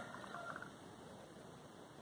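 Quiet room tone: a faint steady background hiss with no distinct event.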